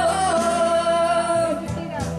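A man singing a Malay ballad into a microphone over a backing track played through a PA speaker. He holds one long note for about a second and a half before the accompaniment carries on.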